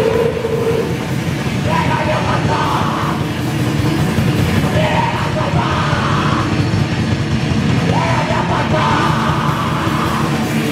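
A raw punk/d-beat band playing live: distorted electric guitar and drum kit running continuously, with shouted vocals coming in three bursts over the top.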